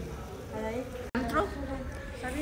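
Speech: a voice talking, broken by a sudden instant of silence about a second in, over a steady low hum.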